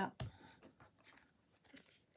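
Paper and card being handled on a cutting mat: one sharp tap about a quarter second in, then faint rustling and light ticks as the panel is pressed down and the card is picked up.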